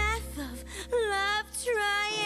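Musical-number excerpt: a voice sings short phrases that slide down in pitch, about three times, over a held low bass note that stops at the end.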